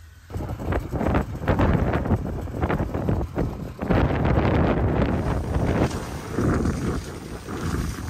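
Strong wind blowing across the microphone in uneven gusts. It is loud and starts abruptly just after the start.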